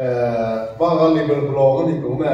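A man's voice preaching, drawing out his words in two long, level-pitched stretches with a short break in between.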